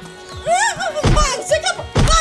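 Music playing over two heavy, dull thunks about a second apart: a red plastic stool being brought down on someone's head as a comic blow.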